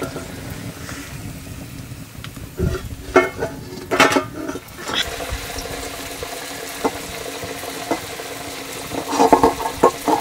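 Wheat flatbread frying in hot oil in a wok over a wood fire: a steady sizzle, broken by a few short louder sounds in the middle and near the end.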